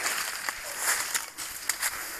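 Dry banana leaves and grass rustling and crackling underfoot and against the body, an uneven scratchy rustle with scattered small crackles.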